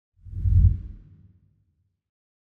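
Deep whoosh sound effect for an intro title card: a single low swell that builds, peaks about half a second in and fades out within a second.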